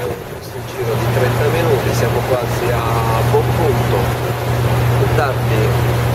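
A riverboat's engine humming steadily, with voices talking over it.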